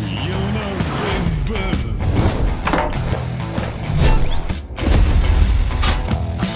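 Film-trailer score and sound design: a deep bass bed with sharp impact hits, and rising sweeps a little after the middle.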